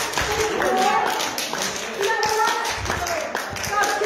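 A congregation clapping their hands in a steady stream of claps, with voices calling out and singing over it.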